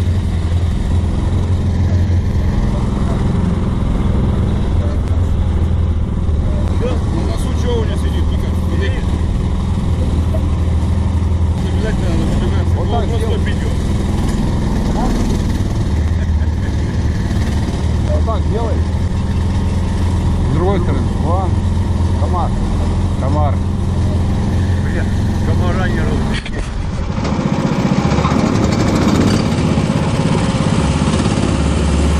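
The engine of a karakat, a homemade all-terrain vehicle on big low-pressure tyres, running steadily throughout, with voices over it in the middle. About 26 seconds in the sound dips briefly and comes back changed.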